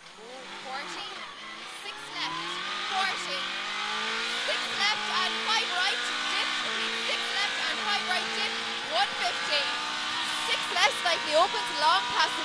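The twin-cam four-cylinder engine of a Toyota Corolla Twin Cam rally car pulls hard away from a standing start, heard from inside the cabin. It gets louder over the first two seconds, and the revs climb and fall back with each upshift.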